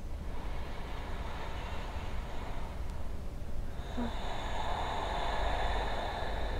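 A steady low rumble, with a passing vehicle rising over it about two-thirds of the way in: a swelling hiss carrying a steady high whine.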